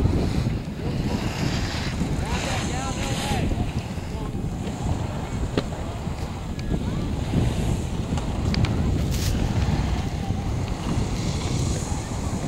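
Wind buffeting the microphone during a chairlift ride, a steady low rumble with a few faint clicks.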